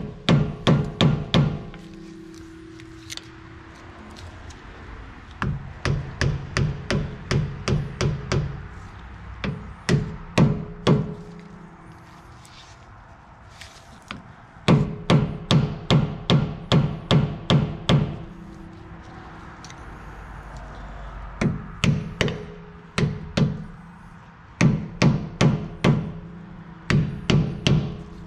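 A hammer tapping a small flathead screwdriver into the pinion seal of a rear differential, prying the old leaking seal out. The taps come in quick runs of several a second with short pauses between, and each run has a metallic ring.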